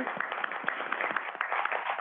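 A room of people applauding, many hands clapping together.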